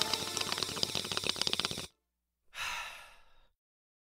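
A song's outro fades with rapid clicking ticks over it and cuts off just under two seconds in; after half a second of silence comes one long, breathy exhale that fades out.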